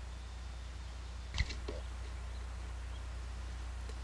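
Steady low electrical hum with one sharp knock about a second and a half in, followed by a brief faint sound.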